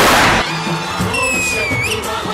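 Stage CO2 jets firing: a loud blast of hiss lasting about half a second at the start, over upbeat dance music.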